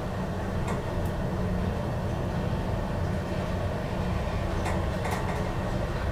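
Deve-Schindler traction elevator car travelling upward with a steady low rumble. A few faint clicks come from the car or shaft along the way.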